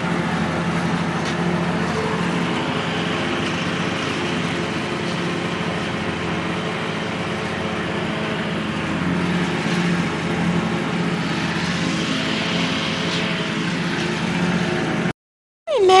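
Lawn mower engine running steadily, an even hum that cuts off abruptly near the end.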